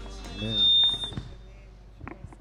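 Microphone feedback through a public-address system: a loud, high, steady whistle about half a second in that lasts about a second, over a brief spoken syllable.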